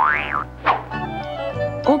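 Cartoon soundtrack: a quick sound-effect glide that sweeps up in pitch and drops back at the start, then the backing music of a children's song holds and fades out on low sustained notes.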